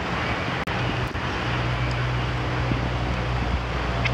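Steady wind noise on the microphone over a continuous low hum. The sound cuts out briefly under a second in.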